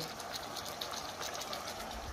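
Chicken pieces frying in oil in a pan: a steady sizzle with rapid, fairly even crackles.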